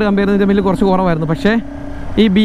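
A voice singing in held, wavering notes that break off about a second and a half in, with a vehicle engine running low underneath.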